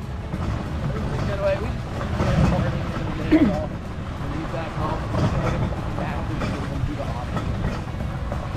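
Steady low rumble of a wheeled dog cart rolling along a dirt trail behind a running sled dog team, with a voice saying "wow" about three and a half seconds in.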